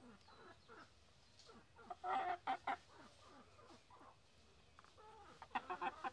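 Domestic hens clucking faintly, with a short run of louder calls about two seconds in.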